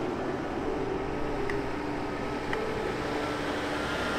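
Fire engine engines running steadily, a continuous hum with faint low tones held throughout.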